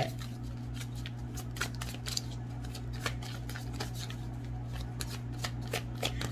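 Tarot cards being shuffled by hand: a quick run of soft, irregular clicks and riffles over a low steady hum.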